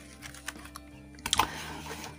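Bubble-wrap and foam packing sheet crinkling and rustling as printed circuit boards are lifted out of a cardboard box. There are scattered small crackles, with a brief louder cluster about one and a half seconds in.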